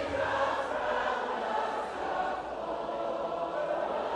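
A large congregation singing together in worship, many voices blended into one soft, sustained sound.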